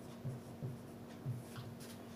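Marker pen writing on a whiteboard: faint short strokes of the felt tip across the board, with a low steady hum behind.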